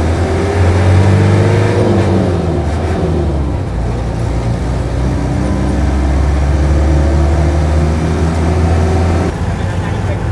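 Bus engine heard from inside the cabin, pulling away with its pitch climbing and then dropping at a gear change about two seconds in, then running as a steady low drone at cruising speed. The sound changes abruptly near the end.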